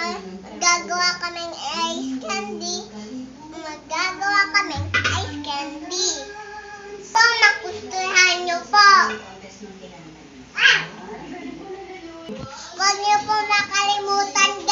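A young girl's voice chattering in short phrases, with no words the recogniser could make out.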